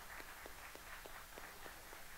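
Faint, scattered applause from a small audience: individual hand claps, about four or five a second.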